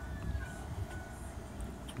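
Low rumble of wind on the microphone, with a faint thin high tone briefly in the first second.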